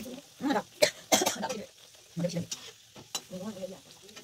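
Oil sizzling as a dalpuri deep-fries in a metal wok, with a few sharp clicks of a perforated metal spatula against the pan as it presses and turns the bread.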